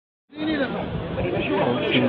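People's voices talking over one another, starting about a third of a second in after a brief silence.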